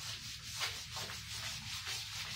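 A cloth wiping chalk off a blackboard, a dry scraping hiss in quick repeated back-and-forth strokes.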